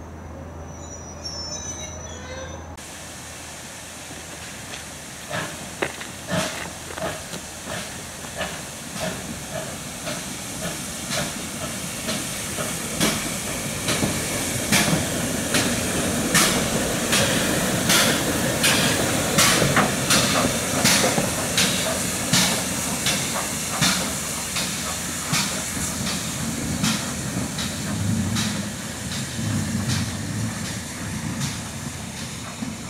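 GWR 5700-class pannier tank steam locomotive 4612 working slowly past at close range: a steady hiss of steam with regular exhaust beats, about two a second. The beats are loudest as the engine passes partway through, then ease as it draws away.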